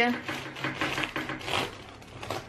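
A bread knife sawing through the hard, crunchy crust of a freshly baked loaf of pão d'água (Portuguese water bread), giving a dense run of crackling crunches that eases off near the end.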